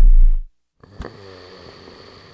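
Loud bass-heavy music cuts off abruptly about half a second in. After a brief silence, a man asleep in bed snores softly.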